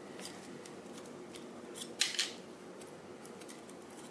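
A few small, sharp clicks as a memory card is pulled from the microcontroller board's card slot. The loudest come about two seconds in.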